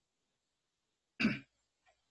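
A man clears his throat once, a short burst about a second in.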